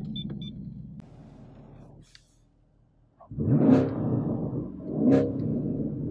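Chevrolet Camaro engine just after start-up, with three short electronic chimes at the very start and a low rumble that fades. It is then revved twice, about a second and a half apart, each rev rising in pitch and then settling.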